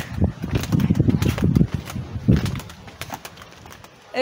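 Wind buffeting a phone's microphone in irregular low rumbles, with a few faint clicks, fading out over the last second and a half.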